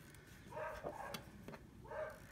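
Three short, faint, high-pitched whines from a dog, with a single small click between them.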